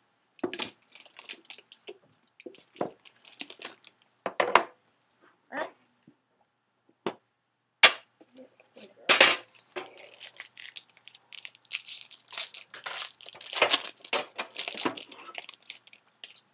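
Plastic shrink-wrap being torn and crinkled off a sealed card box, in irregular crackling spurts that grow busier in the second half.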